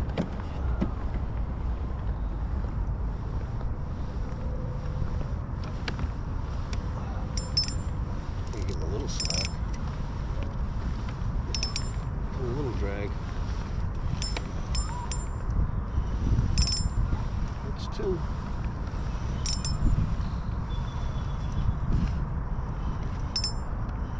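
Steady low wind rumble on the microphone while a spinning reel is cranked, retrieving a lure. Short, sharp, high metallic ticks come scattered through it, roughly one every second or two.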